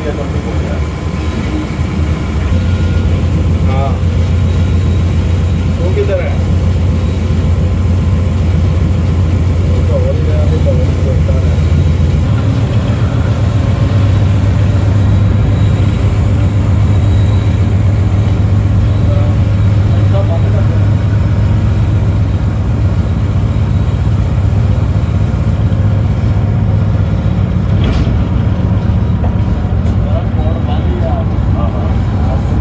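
General Electric AGE-30 diesel-electric locomotive engine working as the train pulls away, a deep, steady chugging. It grows louder about two seconds in and steps up in pitch about twelve seconds in as the engine speeds up.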